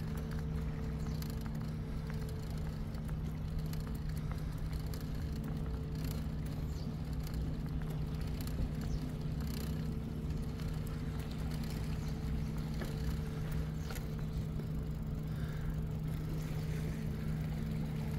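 Bicycle ride on a paved path: a steady low hum with road and tyre noise, and a few faint ticks.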